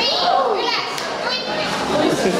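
A crowd of teenagers shouting and shrieking at once, with high sliding squeals over a din of overlapping voices, echoing in a hard-floored corridor.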